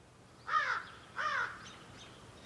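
A bird calling twice, two short calls that each rise and fall in pitch, about two-thirds of a second apart.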